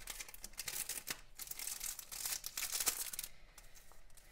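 Clear plastic packaging crinkling and rustling as it is handled and opened, a dense run of crackles that thins out about three seconds in.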